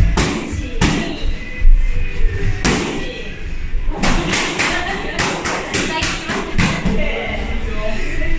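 Boxing gloves and kicks striking handheld kick pads and mitts: a sharp hit about a second in, another near three seconds, then a quick flurry of about ten strikes in the middle, over background music.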